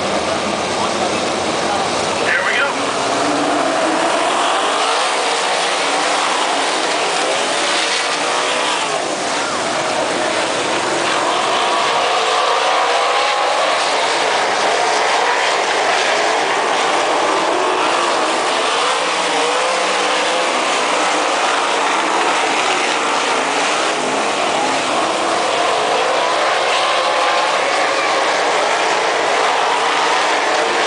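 A field of winged 360 sprint cars running on a dirt oval, their 360-cubic-inch V8 engines heard together, each pitch rising and falling as the cars circle.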